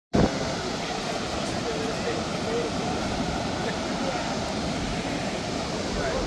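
Steady, unbroken roar of the American Falls at Niagara: heavy water plunging onto the rocks below.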